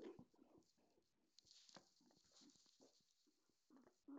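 Near silence, with faint breathy sounds of a man laughing quietly to himself and a few small clicks.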